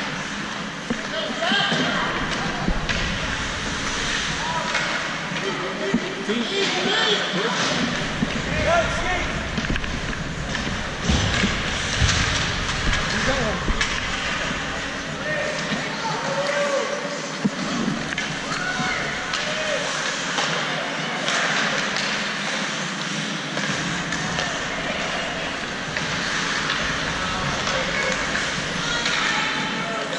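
Ice hockey game sound in an indoor rink: spectators talking and calling out, over a steady noisy bed with scattered sharp clacks of sticks and puck.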